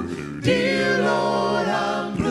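A cappella doo-wop vocal group singing in close harmony, a lead voice over backing voices with no instruments. After a brief dip at the start, the voices come back in together about half a second in and hold a chord.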